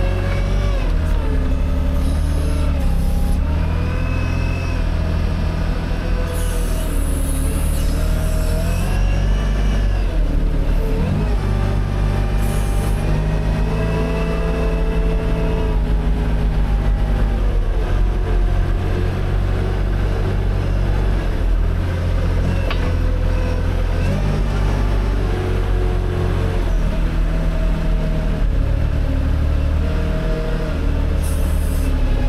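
Front-loader tractor's engine running steadily while the tractor drives with a round hay bale on its bale grab, with a whine that rises and falls in pitch as it moves.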